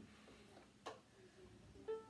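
Near silence: room tone, with one sharp click a little under a second in.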